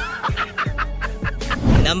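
A man laughing in quick repeated bursts over background music, with a low thump near the end.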